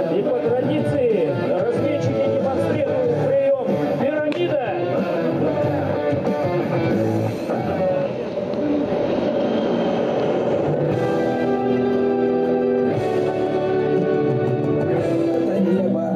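Rock music with electric guitar, an instrumental stretch of a song between its sung lines.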